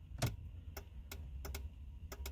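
Turn signal of a 2006 Ram 2500 clicking steadily in the cab, with the left signal on only because the stalk is pushed down hard: the turn signal switch is faulty. A low steady rumble sits underneath.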